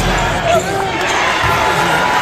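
Sound of a basketball game on a hardwood gym floor: a ball being dribbled, short squeaking glides from players' shoes, and voices in the hall.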